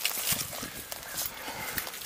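Dry twigs and forest litter crackling and rustling as a split slab of wood is picked up off the ground and handled, a run of small irregular clicks and snaps.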